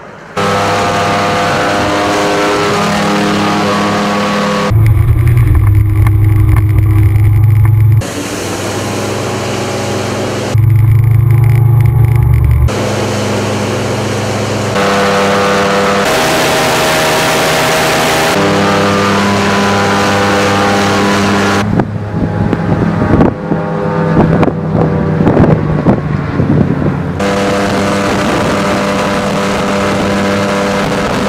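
Evinrude 300 V6 two-stroke outboard running hard under way, a steady engine note over water rush and spray. The pitch and loudness jump abruptly every few seconds, and a rougher, choppier stretch comes about three-quarters of the way through.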